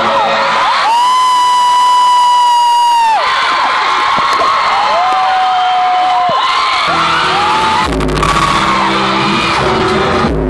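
A concert crowd of fans screaming and cheering, with one long high scream close to the recording phone about a second in and another shorter one in the middle. About seven seconds in, the next song's intro music starts with a deep bass hit.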